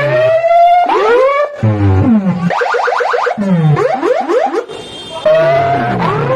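DJ sound rig playing electronic siren-like sweep effects through metal horn loudspeakers: pitched tones sliding up and down, a run of quick repeated upward sweeps near the middle, then falling sweeps, over deep bass notes. It dips briefly about five seconds in before a new rising sweep starts.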